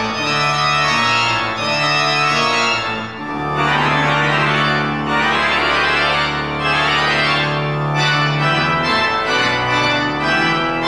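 Church organ playing sustained chords, with a long held low bass note starting about a third of the way in and released near the end.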